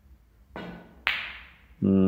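Snooker shot: a duller tap of the cue tip on the cue ball, then about half a second later a louder, sharper click of the cue ball hitting the red object ball, ringing briefly.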